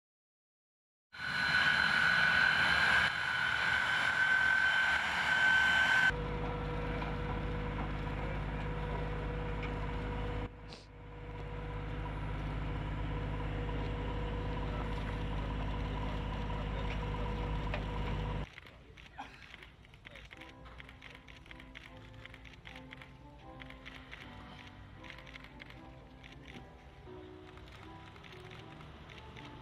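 Jet aircraft engines running: a loud whine held at a steady pitch, then from about six seconds a lower, steady drone with a deep rumble, which stops about two-thirds of the way through. After it comes quieter music of held notes.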